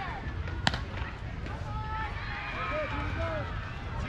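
Distant voices of players and spectators calling out across a softball field over a low outdoor rumble, with one sharp knock just under a second in.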